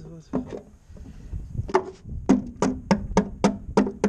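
A quick run of sharp knocks on an aluminum jon boat hull, about five a second, each with a short hollow ring. They start a little under two seconds in.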